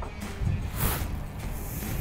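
Background music with a steady low line.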